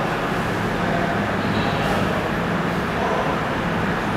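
Steady background noise with a low hum underneath, even and unchanging throughout.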